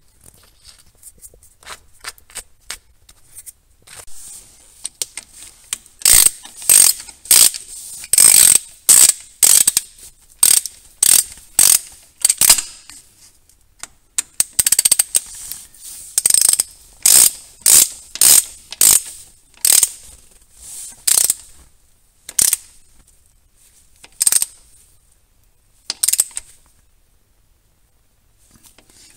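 Hand ratchet clicking in short bursts while it tightens the drain plug into a VW 02J manual transmission case, about two strokes a second. There is a brief pause near the middle, and the strokes become fewer and further apart near the end as the plug snugs up tight.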